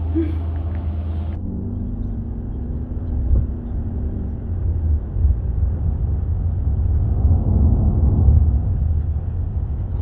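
Road and engine noise heard from inside a moving car: a continuous low rumble that grows louder and more uneven about halfway through. It follows a steady low room hum in the first second or so.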